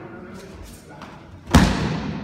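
A judoka thrown onto tatami mats: one heavy thud of the body landing in a breakfall about one and a half seconds in, ringing on briefly in the hall.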